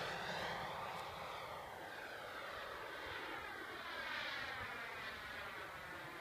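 Radio-controlled Ultraflash model jet receding into the distance, its engine sound fading steadily with a brief swell about four seconds in.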